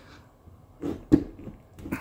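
A ratchet and socket being worked by hand on an oil drain bolt: one sharp metallic knock about a second in, with a few fainter clicks around it.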